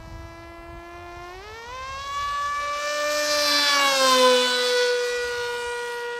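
Electric motor and propeller of a Reptile S800 RC flying wing whining at high speed. Its pitch climbs as the throttle is opened about a second and a half in. It grows louder as the plane comes by, then drops in pitch as it passes and moves away.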